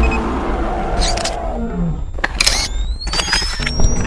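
Logo-intro sound effects: a deep roar over a heavy bass rumble, with short whooshing hits and a whine that rises in pitch over the last second or so.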